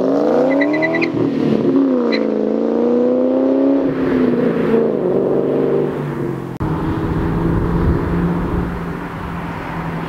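1999 Ford Mustang GT's 4.6-litre two-valve V8 through a Borla Stinger S-type cat-back and catted X-pipe exhaust, accelerating hard away with the pitch climbing to a 5000 rpm shift about a second in, then climbing again to a second gear change near four seconds. After an edit about two-thirds through, the engine drones steadily at a lower pitch as the car heads back toward the camera from a distance.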